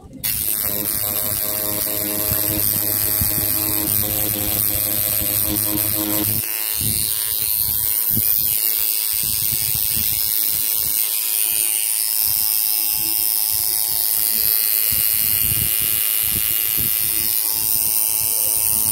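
Homemade wooden-frame coil tattoo machine running, a steady electric buzz. About six seconds in, the buzz turns rougher and more uneven at the low end.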